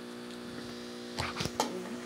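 A steady low electrical hum in a quiet pause between speech, with a couple of faint brief sounds a little past halfway through.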